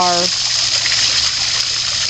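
Water spilling down a stacked-stone waterfall into a backyard pond: a steady, even rushing.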